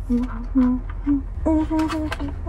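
A woman humming a few short, steady notes with her mouth closed, with a few sharp clicks near the end.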